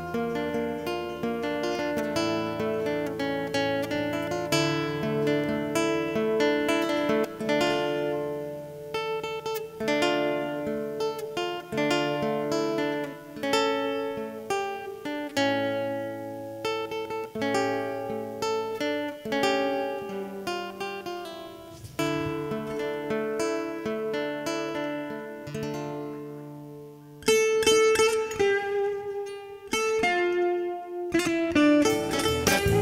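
Cutaway classical guitar played solo, fingerpicked notes over a bass line. About 27 seconds in, louder, brighter rapid plucking comes in on top.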